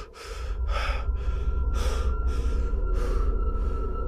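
An animated car character gasping for breath, with quick, ragged breaths coming about two to three a second over a steady low rumble.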